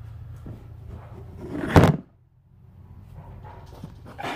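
A camera tipping over and landing with a single loud thud just before two seconds in, after some faint handling rustle over a low steady hum; it is quieter after the knock.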